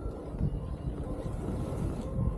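Wind buffeting a helmet-mounted camera's microphone while skiing downhill, a low, uneven rumble.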